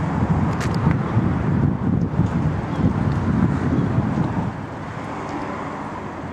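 Wind buffeting the microphone: a low, uneven rumble that eases off about four and a half seconds in.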